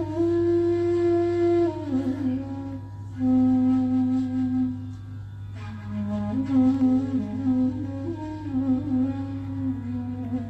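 Hindustani classical music from a sitar ensemble: a melody of long held notes that slide from one pitch to the next, with a steady low hum underneath.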